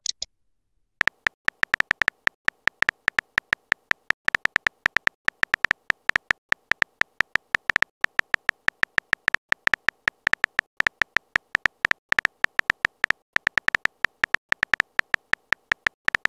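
Phone keyboard typing sounds: a rapid, slightly uneven run of short pitched clicks, about seven a second, starting about a second in, one tap per letter as a text message is typed.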